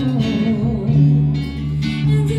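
A live band playing, guitar and electric bass to the fore, with only a little singing.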